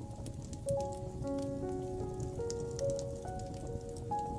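Soft piano music, a slow melody of held notes, over the crackle of a wood fire, with frequent small pops and snaps.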